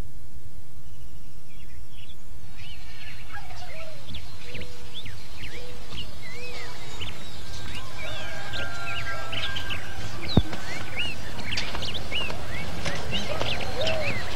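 Many small birds chirping and twittering outdoors, starting a couple of seconds in and growing busier toward the end, over a steady low background rumble. One sharp click about ten seconds in.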